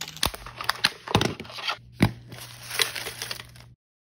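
Packaging of an L.O.L. Surprise ball being torn and peeled open, with crinkling and three sharp snaps. The sound cuts off abruptly near the end.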